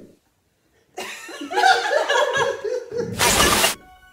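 A burst of laughter from about a second in, lasting about two seconds, followed by a short hiss of TV static near the end as the channel changes.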